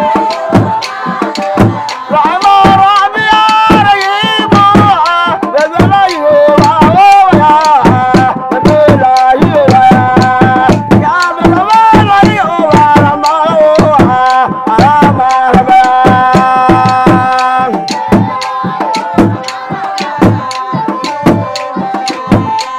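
Sharara dance music: hand drums beaten in a rapid, steady rhythm, with voices singing a melody over them.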